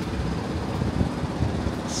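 City traffic noise rising from the streets far below, with wind gusting against the microphone in irregular low rumbles.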